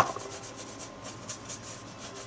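A sharp click at the start, then faint scratching and rubbing as a paintbrush dabs gesso through a plastic feather stencil onto a paper journal page.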